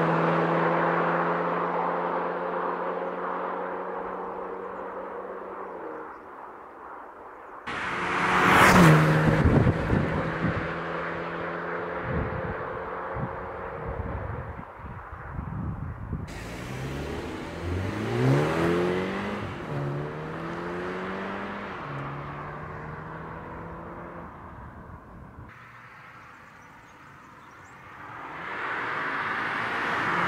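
2022 Mini John Cooper Works' 2.0-litre turbocharged four-cylinder engine as the car drives past on a country road. Its steady note fades as it pulls away, then it comes by loudly about nine seconds in. Midway the revs climb several times in quick succession, and near the end it grows loud again as the car comes close.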